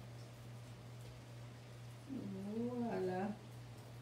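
A woman's voice making one drawn-out wordless sound, about a second long, starting about two seconds in, over a steady low hum.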